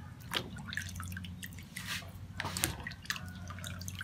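Water dripping from wet aloe vera pieces into a plastic bowl of water while a knife slices the leaf, with a few sharp clicks over a steady low hum.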